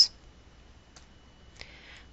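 A quiet pause holding two faint clicks, one about a second in and a sharper one near the end, the second followed by a brief faint hiss.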